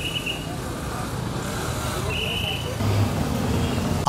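Outdoor street ambience: steady traffic noise with a murmur of voices, and two short high-pitched tones, one at the start and another about two seconds later.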